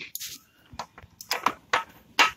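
A few sharp, irregular metal clicks and knocks from a socket wrench being fitted onto the timing-chain tensioner of an Ecotec LE5 engine.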